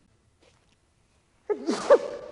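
A man sneezing once, a single loud burst about one and a half seconds in after a quiet pause.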